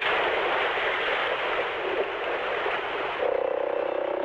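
Steady hiss of static-like noise that cuts in abruptly; a humming tone joins it about three seconds in.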